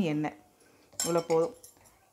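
A woman's voice speaking in two short bursts, one at the start and another about a second in, with quiet room tone between.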